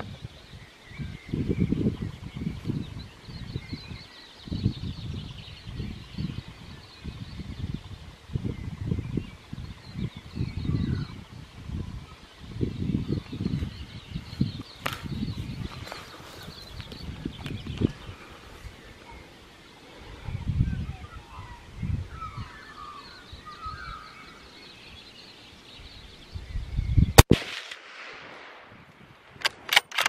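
A single rifle shot about 27 seconds in: one loud, sharp crack with a short echo tail, followed near the end by a few quick sharp clicks. Before the shot, low rumbling gusts buffet the microphone.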